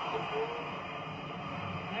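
Football match broadcast playing on a television: steady stadium crowd noise with a commentator's voice faintly over it.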